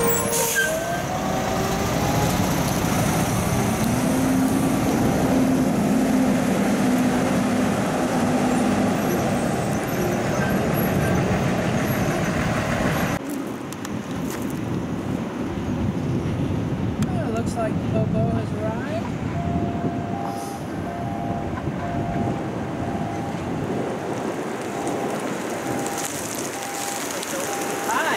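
Diesel semi-trucks hauling shipping containers running and moving past close by, with a steady engine tone for several seconds. About halfway through it cuts to quieter outdoor traffic noise.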